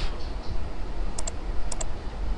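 Clicks from a computer being worked, keys or mouse buttons: two quick pairs of sharp clicks about half a second apart, over a steady low hum.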